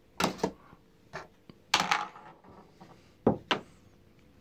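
Handling noise: a few sharp knocks and short rubbing sounds in small clusters, against a quiet room.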